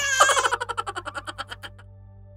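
A man laughing, a fast cackling run of short 'ha' pulses that starts loud and fades out over about a second and a half, over a steady low hum.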